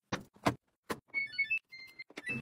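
Three short knocks, then a washing machine's electronic control panel beeping as its cycle dial is turned. The beeps come as a quick run of short tones at several pitches, ending in one longer beep.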